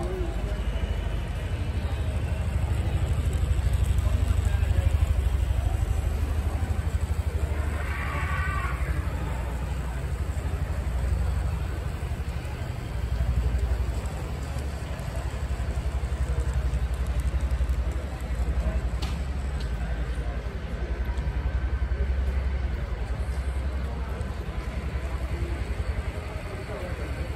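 Steady low rumble of a large exhibition hall's background noise, swelling and sagging, with distant voices; a short voice is heard about eight seconds in.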